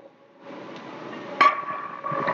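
A loaded barbell set down on a gym floor after a deadlift: one sharp metallic clank about one and a half seconds in, followed by a ringing tone from the plates, over steady gym background noise.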